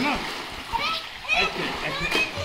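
Water splashing in a swimming pool as people swim and kick, with short bits of children's voices.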